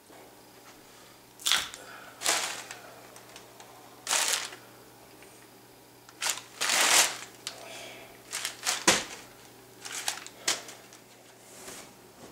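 Crumpled newspaper being handled, crinkling and rustling in irregular short bursts, with a sharper thump about nine seconds in.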